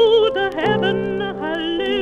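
A woman's contralto voice singing long held notes with a wide vibrato, over accompanying chords, played from a 45 rpm record.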